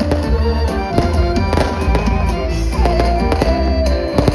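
Loud live amplified folk dance music: a melody line over a heavy bass beat. Sharp cracks are scattered throughout.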